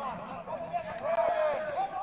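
Raised men's voices shouting and calling out at a distance, high-pitched and drawn out, running on through the whole two seconds.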